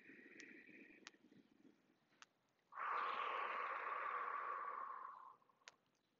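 A woman breathing in time with slow arm sweeps: a faint inhale at the start, then a longer, louder audible exhale of about two and a half seconds, starting about three seconds in.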